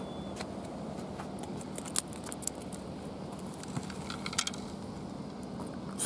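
A few short, sharp clicks and taps over a steady background hiss, as a hooked pufferfish and the fishing rig are landed on a concrete breakwater.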